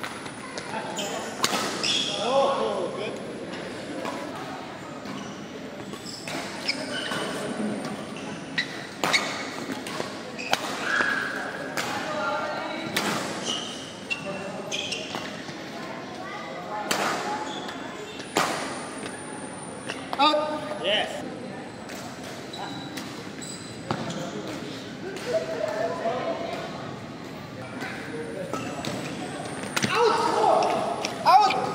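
Badminton rally in a large hall: rackets striking the shuttlecock in sharp hits every second or two, over the voices of players and people around the court.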